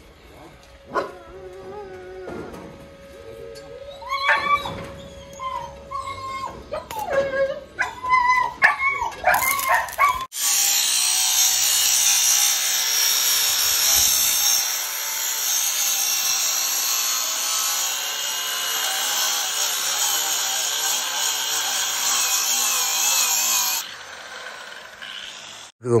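A dog whines and yips in short, rising and falling calls for about the first ten seconds. Then a Hitachi angle grinder cuts through steel bar stock with a steady high grinding for about thirteen seconds, stopping near the end.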